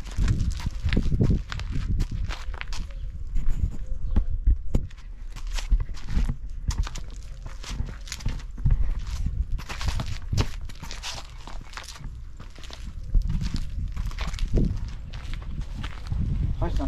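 Footsteps in sneakers crunching on loose gravel, then walking on paving stones: a string of irregular short crunches and scuffs.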